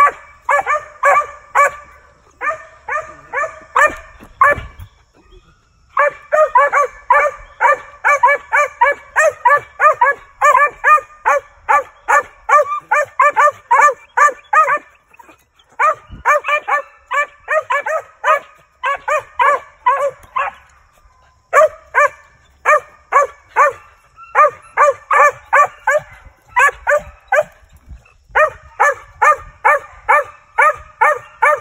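A Mountain Cur squirrel dog barking in rapid, steady runs, about three barks a second, with a few short breaks. It is barking up a tree at a squirrel, the treeing bark of a tree dog.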